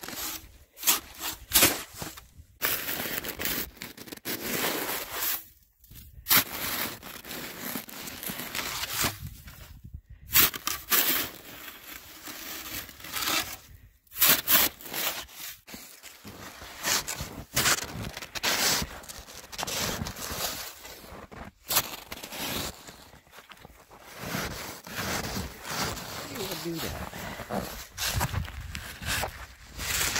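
Snow shovel scraping and pushing through deep, dry snow in repeated strokes, each a second or two of crunching scrape with short pauses and occasional sharp knocks.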